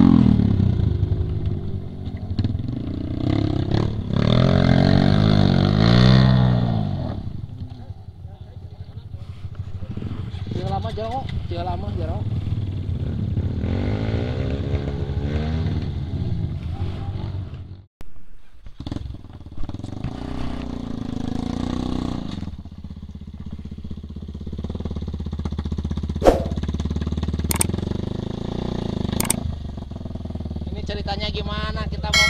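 Dirt-bike engines revving up and down in repeated surges as the bikes climb a muddy, rutted trail. A sharp knock comes near the end, followed by a couple of short clicks.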